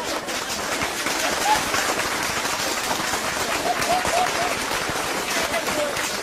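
Audience applauding steadily, with a few short bursts of laughter rising through the clapping.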